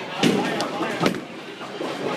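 Bowling ball dropped onto the lane by a small child, hitting with two thuds about a second apart. Bowling-alley chatter goes on behind.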